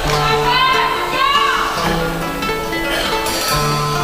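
A carnival chirigota's music: acoustic guitars playing held chords with other wavering pitched sounds over them, the instrumental lead-in before the group's singing.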